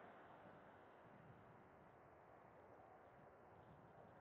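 Near silence: a faint, steady hiss with no distinct sounds.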